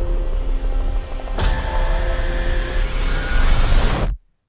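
Dramatic film-trailer music with held tones, a sharp hit about a second and a half in, building louder toward the end.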